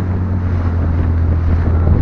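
Cabin cruiser under way at speed: a steady low engine drone under heavy wind buffeting on the microphone, with water rushing along the hull.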